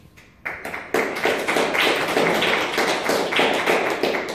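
Audience applauding at the end of a song, the claps starting about half a second in and growing to a steady, full applause from about a second in.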